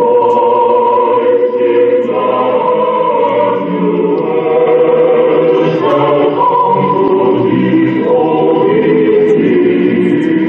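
A choir singing, holding long chords that change every second or so.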